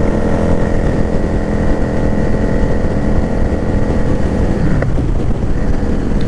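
Yamaha Drag Star 650's 649 cc V-twin engine running steadily as the motorcycle rides along the road. About four and a half seconds in, the engine note falls and its steady tone breaks up.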